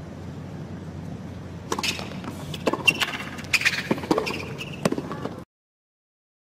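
Tennis arena ambience between points: a steady low hum, then from about two seconds in a scatter of sharp knocks and short high-pitched calls. It cuts off abruptly near the end.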